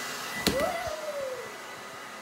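Hair dryer blowing. About half a second in comes a sharp click, then a whine that jumps up and falls away over about a second as the dryer is switched off and spins down.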